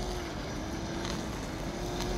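Steady hum of a working rapeseed processing plant's machinery: one held tone with a low rumble beneath.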